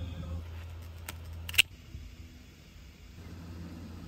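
Two sharp clicks about a second and a half in, the second much louder, over a low steady hum.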